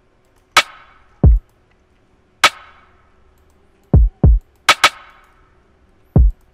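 Sparse programmed drum-machine pattern in FL Studio: a deep kick that drops quickly in pitch alternating with sharp snare hits that ring briefly. About four seconds in come two quick kicks, then two quick snare hits.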